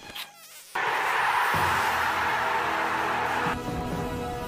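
A loud, harsh buzzing noise from a cartoon's sound effects, starting just under a second in and cutting off after about three seconds, over background music.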